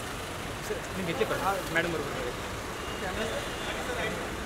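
Steady hum of road traffic at an airport kerb, with indistinct voices of people nearby breaking through in short snatches in the middle of the stretch.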